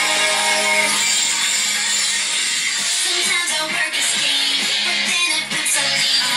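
Pop-rock song playing, with guitar: held notes at first, then a busier stretch of shorter notes from about halfway in.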